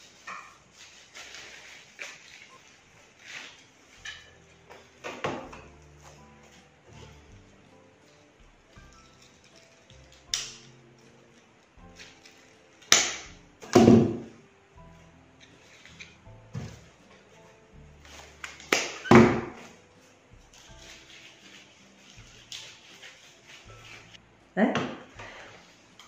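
Soft background music runs under a string of rustles and thunks as stems and fir branches are handled and pushed into a vase arrangement. The loudest of these come about halfway through and again a few seconds later.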